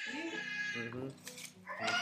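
A person's drawn-out, wavering vocal sound about a second long, with a second one starting near the end; background music plays underneath.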